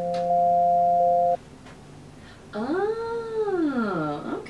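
A steady held tone of two notes cuts off abruptly just over a second in. After a short pause comes one drawn-out voiced call, about a second and a half long, that rises and then falls in pitch.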